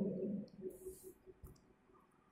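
A single faint click about one and a half seconds in, as the lecture slide is advanced; otherwise very quiet.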